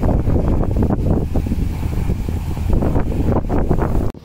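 Wind buffeting the phone's microphone in uneven gusts, over the distant running of a combine harvester cutting wheat.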